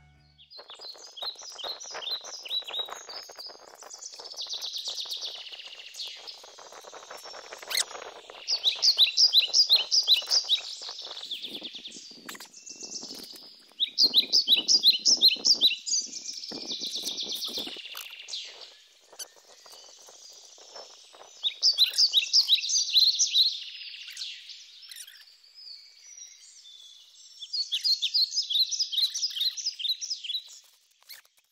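Bird song: phrases of rapid, high, repeated chirps come every few seconds, with a low crackling noise beneath them through the first half.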